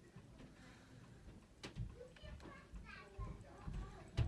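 A quiet room with faint voices in the background about halfway through. There is one sharp click about one and a half seconds in, and a few soft low thumps.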